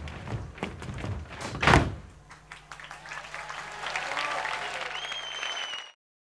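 Dancers' feet stamping heavily on a stage, ending in one loud stamp just under two seconds in. Then an audience's cheering and applause builds, with a whistle about five seconds in, before the sound cuts off.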